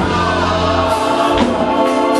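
Church gospel singing: several voices sing together over instrumental accompaniment, with a sharp percussive beat about one and a half seconds in.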